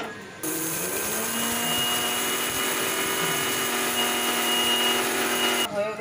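Electric mixer grinder running, grinding spices to a powder in a small steel jar: a steady motor whine that starts about half a second in and cuts off sharply near the end.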